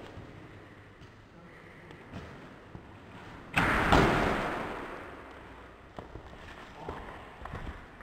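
A wrestler's body landing heavily on padded gym mats about three and a half seconds in: a sudden thud with a second hit right after, dying away over a second or so. Small knocks and shuffles before and after.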